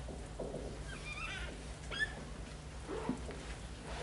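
Dry-erase marker writing on a whiteboard: a few short, high squeaks as the strokes are drawn, with light taps of the marker against the board.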